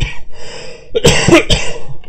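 A man laughing in breathy, noisy bursts, loudest about a second in.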